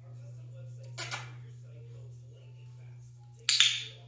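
Dog-training clicker marking a puppy's sit: a sharp double click about a second in and a louder double click near the end, as the puppy settles into the sit. A steady low hum runs underneath.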